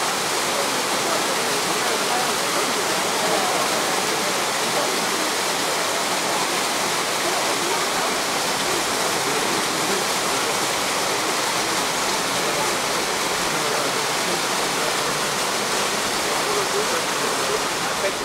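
Small waterfall falling down a rock face into a pool: a steady, unbroken rush of water.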